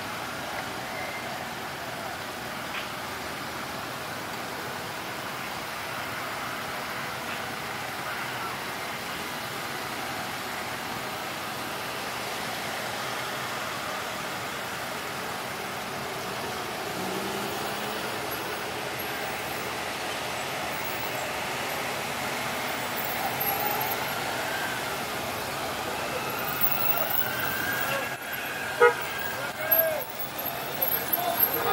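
A motorcade of cars and police escort motorcycles driving past with a steady traffic noise. Wavering, siren-like tones come in over the last few seconds as the motorcycles approach, with a short sharp sound just before the end.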